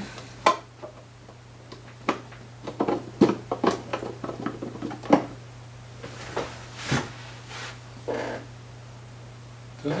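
Scattered small clicks, taps and knocks of hands pressing and adjusting a pickup, with foam padding underneath, into the top of a hollowbody electric guitar, over a steady low hum.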